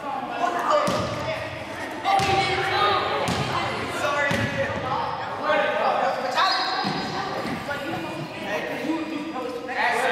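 Voices talking in a reverberant gym, with a basketball bouncing on the hardwood floor a handful of times at uneven intervals.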